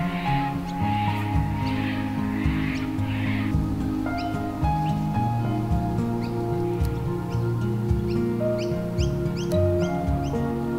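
Instrumental background music with held, changing notes and a pulsing hiss in its first few seconds. From about halfway through, short high rising chirps repeat over it.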